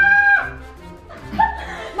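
A high-pitched celebratory shout, held on one note and cut off about half a second in, then faint laughter over background music.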